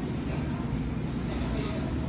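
Automatic tortilla machine running with a steady low rumble and hum, its stacked griddle plates turning. Indistinct voices sound in the background.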